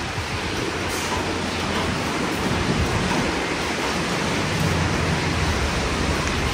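Steady hiss of falling rain, even throughout.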